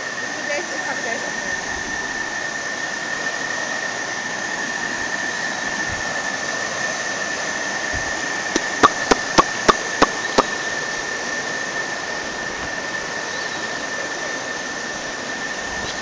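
River rapids rushing over rocks, a steady churning noise, with a thin high-pitched tone running under it. A little past halfway comes a quick run of about seven sharp clicks, roughly three a second.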